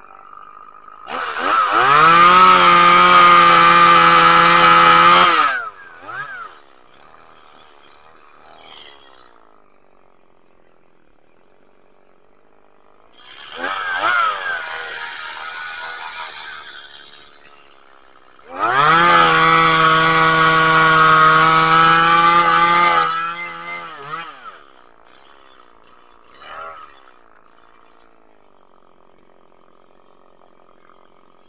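Stihl top-handle two-stroke chainsaw revved up from idle three times: a full-throttle run of about four seconds, a shorter lower burst, then another full-throttle run of about four seconds. It drops back to a steady idle between runs and gives a brief blip near the end.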